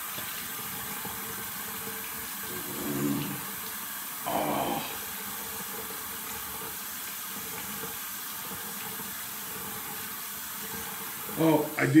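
Bathroom sink tap running steadily while water is splashed onto a face to wet it for shaving, with a couple of short louder sounds about three and four and a half seconds in.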